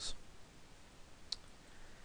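A single short, faint click at the computer a little past halfway, over quiet room hiss.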